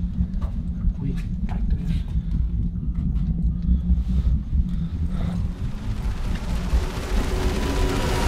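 Footsteps knocking on a hard floor over a steady low rumble, with a hissing noise swelling over the last few seconds.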